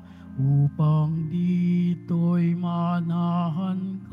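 Offertory hymn at Mass: a singer with vibrato over sustained accompaniment chords, in short phrases with brief breaks between them.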